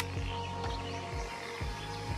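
Soft ambient background music: sustained held tones over a low pulse about twice a second.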